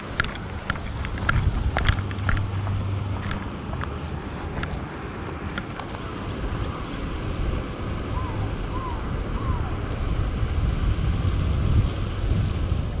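Wind buffeting the microphone: a steady low rumble, with a few light clicks in the first three seconds or so and three faint short chirps about eight to nine and a half seconds in.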